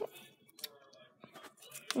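Faint rustling and a few small, sharp clicks from tiny paper books being handled and opened.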